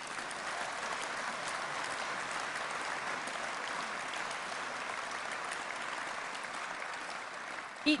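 A large audience clapping steadily in a big hall, easing off slightly near the end.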